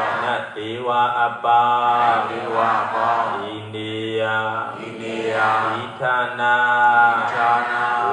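A Buddhist monk chanting Pali verses in a single male voice, in long drawn-out intoned phrases with short breaks between them, amplified through a public-address system.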